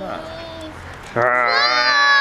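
A young child's long, high-pitched shout, starting about a second in and held for nearly two seconds, its pitch bending slightly. Softer child voice sounds come before it.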